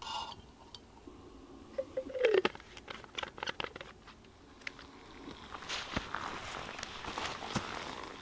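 Light clicks and crunches of handling among dry leaves, then from about five seconds in a faint crackling hiss building: a homemade aluminium-can alcohol stove burning under an aluminium mug of water, heating it.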